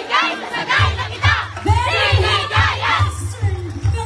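A group of voices shouting and whooping together over loud festival music. A heavy, steady drum beat comes in just under a second in.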